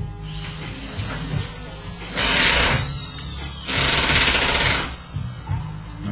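Hobby servo motors of an InMoov robot arm buzzing in two bursts, the first about two seconds in and a longer one of about a second near four seconds, as the servos connect through the Arduino and drive to position.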